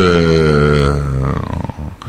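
A man's drawn-out hesitation sound, a long held 'ehh' lasting about a second and a half and sagging in pitch as it trails off, with a short murmur near the end.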